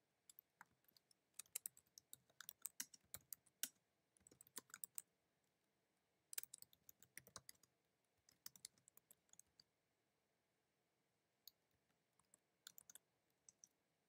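Faint computer keyboard typing: bursts of quick keystrokes with short pauses between them and a longer pause about two-thirds of the way through.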